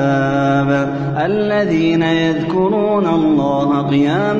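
Solo male Quran recitation in melodic tajweed chant: long drawn-out vowels held on steady notes, with the pitch climbing about a second in and turning through smaller ornaments after.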